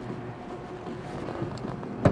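Steady background noise of a large exhibition hall, a low even hum with a few faint small clicks near the end.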